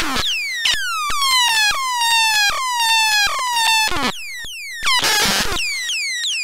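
Eurorack modular synthesizer played by a hand-moved fader: a quick run of bright pitched tones, several a second, each swooping down in pitch, chopped off by sharp clicks. About four seconds in the tones stop for a moment of clicks and a short noisy burst, then the falling tones return.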